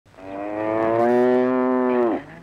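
A cow mooing: one long call that swells in, holds with a slight rise in pitch, and falls away at the end.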